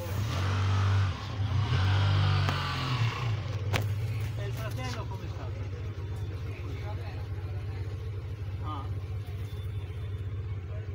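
A car's engine heard from inside the cabin, working harder for the first three seconds as the car creeps forward, then idling steadily while the car stands still. There are a couple of sharp clicks about four to five seconds in.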